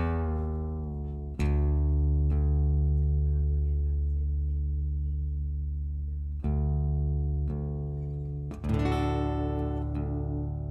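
Steel-string acoustic guitar with chords struck about four times a few seconds apart, each left to ring out and fade, as the guitar is checked for tuning before a song.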